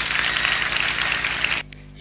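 Audience applause, a steady even clatter that cuts off abruptly about a second and a half in.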